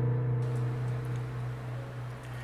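An acoustic guitar's last strummed chord ringing out and slowly fading. Faint room hiss comes in about half a second in.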